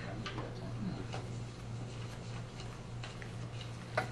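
Faint, irregular light ticks and taps over a steady low electrical hum in a quiet room.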